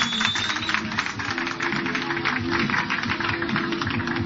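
Dance music with fast, dense percussive strokes and a held low note that comes in about a second in.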